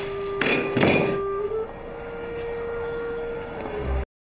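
A ceramic plate set down on a wooden table with a couple of knocks in the first second, over background music holding one long low note that steps up in pitch about a second and a half in.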